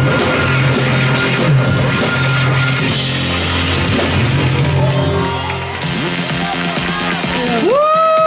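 Live rock band playing loud, with electric guitar, bass and drums. About six seconds in the bass and drums drop out, leaving a bright ringing wash, and a voice calls out near the end.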